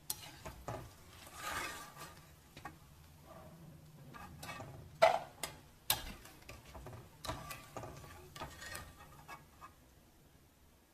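Metal slotted spoon clinking and scraping against an aluminium kadai as fried namak pare are scooped out of hot ghee, with a faint sizzle of frying. Two sharper clinks come about five and six seconds in.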